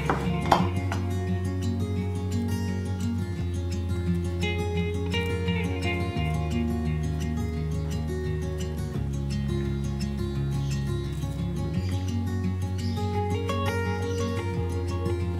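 Background instrumental music, a light tune over a bass note that changes every few seconds, with one sharp knock about half a second in.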